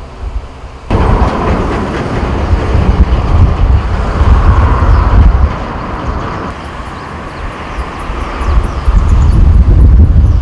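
Wind buffeting the microphone outdoors: a loud, gusting low rumble that starts suddenly about a second in. Over the second half a faint, rapid high ticking runs underneath.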